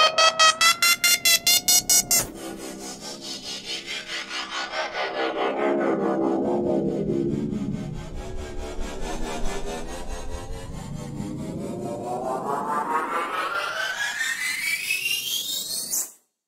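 Synthesized riser sound effects. First a rapidly pulsing tone climbs in pitch and stops about two seconds in. Then a pulsing sweep falls in pitch to a low point around the middle, climbs back up, and cuts off suddenly at its peak.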